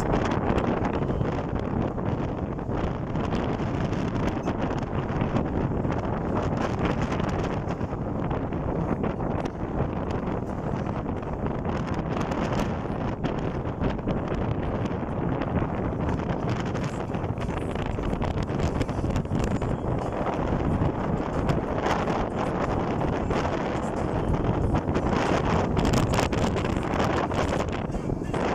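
Wind rushing over the microphone from a vehicle driving along a paved mountain road, a steady rumble of road and engine noise underneath.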